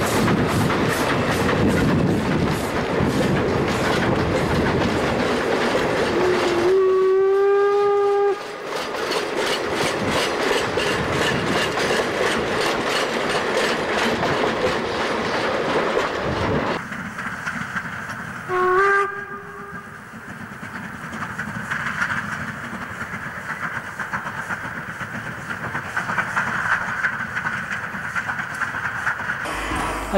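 Narrow-gauge steam locomotive working a train, its exhaust beating steadily; its whistle sounds one long note about seven seconds in and a short blast about nineteen seconds in. The sound changes abruptly twice, and the last part is quieter.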